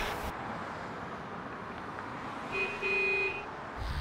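Low steady street noise, with a car horn sounding in two short toots about two and a half seconds in.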